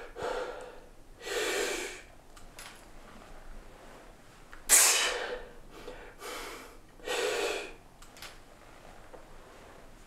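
A man breathing hard through his mouth from the strain of a heavy barbell set: about five forceful breaths, the loudest and sharpest about five seconds in, with quiet pauses between.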